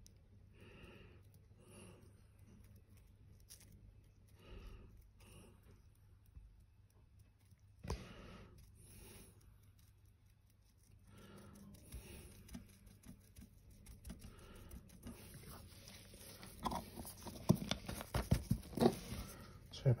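A paintbrush stippling paint onto a test panel: quick, irregular dabbing taps that grow denser and louder over the last few seconds, with the brush knocking against the camera. A faint voice is heard in the background in the first half.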